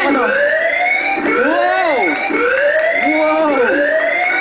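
Game-show siren sound effect: a whooping electronic siren, four rising wails about one a second. It marks an 'Extra Hot' bonus question.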